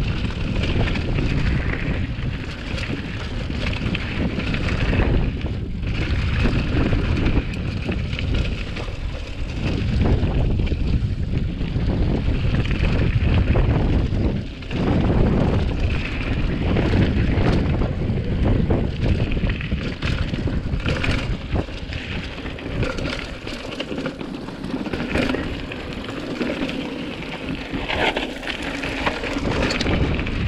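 Wind buffeting an action camera's microphone while a hardtail cross-country mountain bike rolls fast down a rocky gravel trail, with tyres on loose stones and the bike rattling and knocking over the rough ground.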